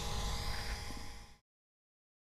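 Faint room tone: a steady electrical hum with a light hiss, cutting off abruptly to silence about a second and a half in.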